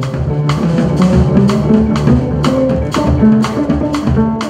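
Jazz piano trio playing: drum kit keeping a steady beat of about two strokes a second under sustained piano and double bass notes.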